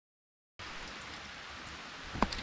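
Dead silence for about half a second, then a steady hiss of light rain falling.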